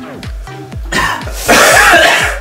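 Background music with a steady beat; about one and a half seconds in, a person gives a loud, harsh cough from the burn of a hot habanero chip.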